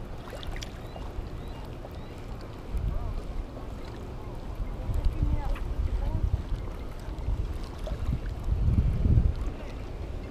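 Wind buffeting a small camera microphone in gusts, swelling about three, five and nine seconds in, over a steady low rumble.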